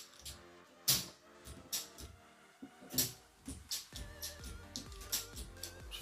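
Several sharp clicks of plastic circuit-breaker toggles flipped by hand on a small old consumer unit, over quiet background music. These are cheap breakers that latch only about one time in two.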